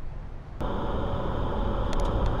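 Steady road and engine noise of a moving car heard from inside the cabin. It is low and quiet at first, then switches abruptly about half a second in to a louder, fuller drive noise.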